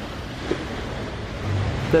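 Steady rushing noise of sea surf and wind, swelling a little louder toward the end.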